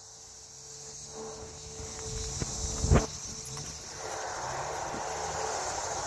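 Steady high insect chorus of crickets, with rustling and handling noise as someone moves across grass, and one sharp thump about three seconds in.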